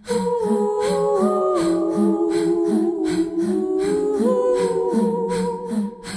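Music: several wordless humming voices in harmony hold long chords that shift step by step, over a steady beat of soft ticks.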